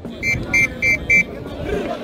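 Four short high-pitched beeps, evenly spaced at about three a second, over crowd noise.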